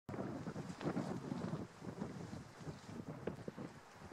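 Wind buffeting the microphone over the outdoor sound of the C11 steam locomotive working in the distance. The noise is rough and uneven, louder for the first second and a half and then lower.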